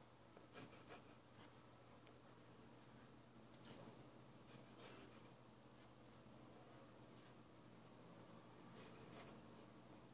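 Faint scratching of a wooden graphite pencil drawing on paper, in short strokes at irregular intervals.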